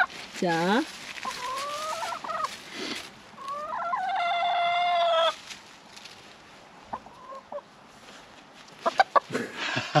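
Brown hen squawking while pinned to the ground by hand. A short swooping squawk comes first, then two long drawn-out calls, the second one louder and ending a little past the halfway point.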